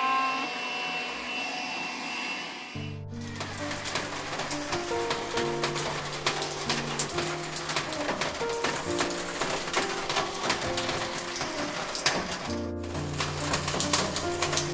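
A handheld cordless vacuum cleaner runs for the first few seconds, then is cut off abruptly about three seconds in. Background music with stepped bass and melody notes fills the rest.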